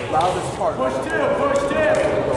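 Several people's voices calling out and talking. In the second half one voice holds a long, steady call.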